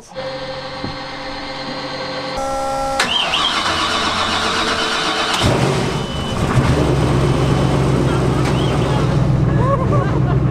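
The speedboat's high-performance inboard engines starting up: a sudden burst of noise about three seconds in, then from about five and a half seconds a loud, steady low rumble as they run.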